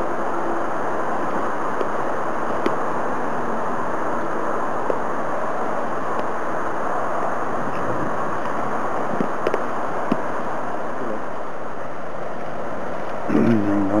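Steady rushing noise of strong wind outdoors, with a few faint clicks.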